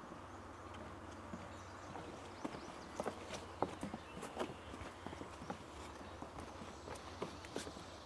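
Footsteps of several people walking on a wooden boardwalk: irregular knocks on the planks, starting a couple of seconds in and continuing as they pass.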